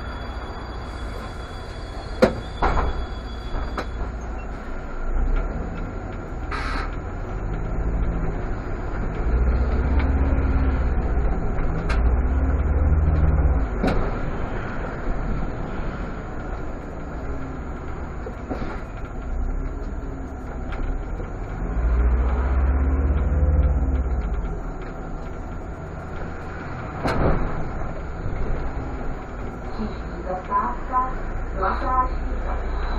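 Irisbus Citelis CNG city bus heard from the cab: the engine rumbles low and swells as the bus pulls away and accelerates, its note rising in sweeps twice. A sharp click about two seconds in and a few smaller knocks from the cab.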